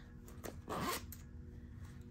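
Zip of a small fabric pop-up pencil case being pulled open, a brief zipping sound about half a second in.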